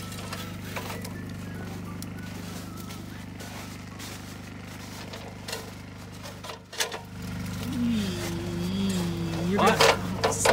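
An aluminium extension ladder knocks a few times against the cabin as it is raised and set against the roof edge, over a steady low drone. A voice comes in near the end.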